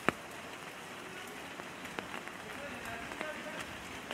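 Steady rain with scattered drops ticking close by, one sharp tick just after the start.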